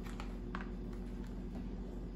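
Quiet room tone with a steady low hum, and a few faint light clicks from a boxed food package being handled.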